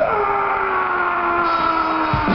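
One long held note sliding slowly down in pitch during a stop in a heavy metal band's playing, the drums silent, with the full band crashing back in just after the note ends.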